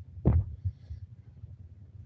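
A short low thump just after the start, then a quiet low hum with faint irregular pulsing.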